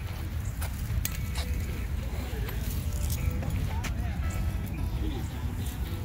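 Outdoor walking ambience: a steady low rumble of wind on the phone's microphone, a few sharp clicks, and indistinct voices in the background.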